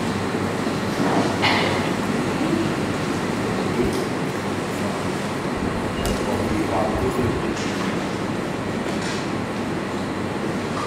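Steady rumbling background noise of a large hall, with faint, indistinct voices and a few soft knocks.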